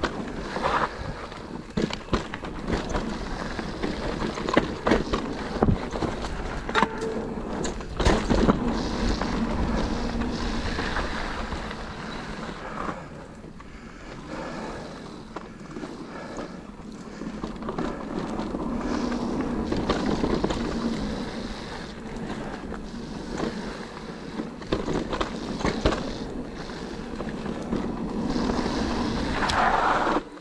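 Cube Stereo Hybrid 140 TM electric mountain bike riding fast down a dirt trail: tyres rolling on loose dirt, wind rushing on the microphone, and frequent knocks and rattles from the bike over bumps and roots.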